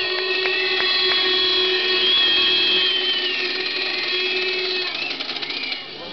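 Protest crowd whistling in disapproval: several shrill, held whistle tones at different pitches sound together over a lower sustained tone, then die away near the end.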